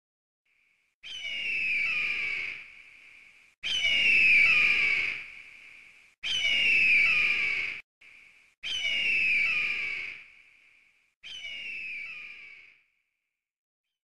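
A bird of prey's scream, the stock 'eagle' cry, heard five times about two and a half seconds apart. Each call is loud and harsh and falls in pitch as it tails off. The last call is weaker.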